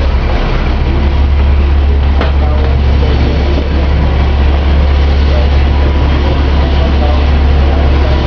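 Steady low rumble of a city bus's engine and running gear, heard from inside the passenger cabin, with a single sharp click about two seconds in.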